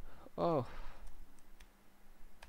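A few separate computer keyboard keystrokes clicking while a line of code is corrected.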